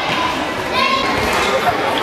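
Children shouting and calling in a large sports hall, the voices echoing; one high shout stands out just under a second in.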